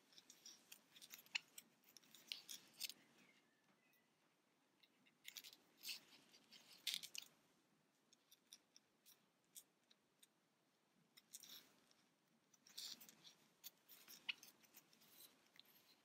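Near silence, broken by faint scratchy clicks and rustles of a crochet hook catching and pulling yarn through tight stitches, in three short spells with quiet pauses between.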